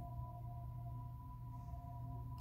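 Faint held tones, two steady high notes sustained over a low hum, like quiet background music or a pad; nothing else happens.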